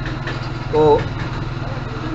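An engine idling with a steady low drone, with a short spoken sound just before one second in.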